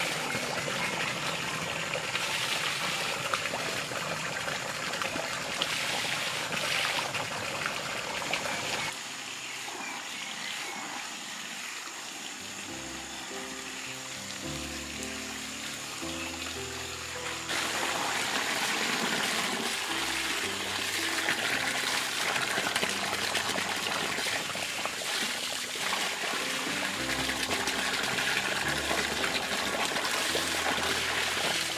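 Water running steadily from a pipe spout and splashing onto hands, rocks and a basket of watercress being rinsed under the stream. Soft background music joins about a third of the way in, and the water grows quieter for several seconds in the middle before it returns louder.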